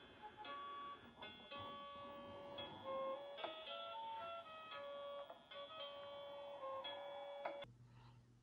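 Graco EveryWay Soother baby swing playing a nursery-rhyme tune from its built-in speaker: a quiet, simple electronic melody of single notes, which stops suddenly near the end.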